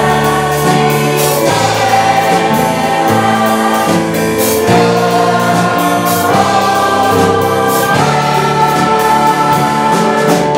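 Large mixed choir singing in harmony, holding sustained chords that move to a new chord about every second and a half.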